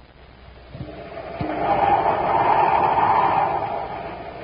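A rushing, whooshing sound effect that swells up over about two seconds and then fades away, marking a scene transition in a 1950s radio drama.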